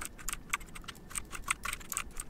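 Computer keyboard typing: rapid, irregular key clicks.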